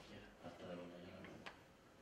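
Faint speech from a voice in a room, with one sharp click about a second and a half in.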